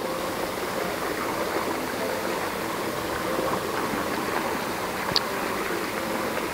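Steady rushing background noise of the open-air setting, even throughout with no distinct events, and one brief high chirp about five seconds in.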